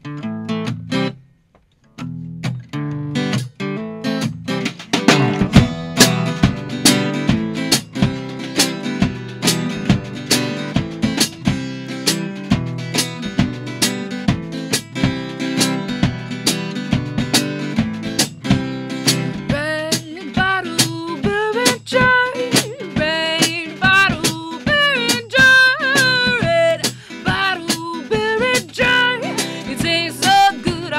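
Live acoustic band performance: strummed acoustic guitar with a drum kit keeping a steady beat, after a brief break about a second in. A woman's voice starts singing about two-thirds of the way through.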